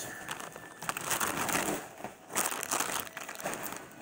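Soft plastic baby-wipes pack being handled and crinkled, in a few irregular spells of rustling.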